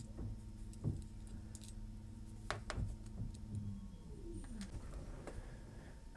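A few faint, light clicks and taps of small metal parts from a taken-apart volume-control potentiometer being handled, over a low steady hum.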